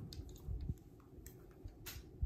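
Quiet handling sounds as a sheet of alcohol-ink paper is turned on the work surface: a few soft taps and clicks, the sharpest near the end, over a faint steady hum from a running fan.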